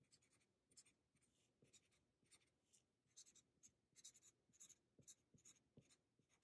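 Faint, quick scratches of a green Sharpie felt-tip marker on paper, drawing short repeated strokes for grass texture. The strokes are sparse at first and come thick and fast in the second half.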